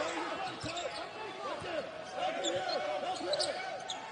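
A basketball being dribbled on a hardwood court during live play, with repeated short sneaker squeaks from players moving.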